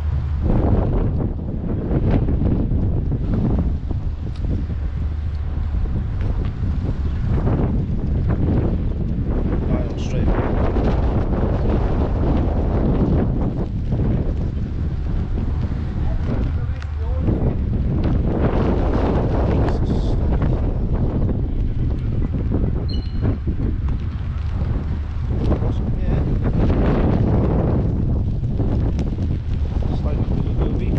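Strong gusty wind buffeting the microphone: a loud low rumble that keeps swelling and easing.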